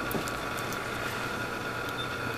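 Low, steady background noise with faint steady high tones running through it, with a couple of very faint handling ticks.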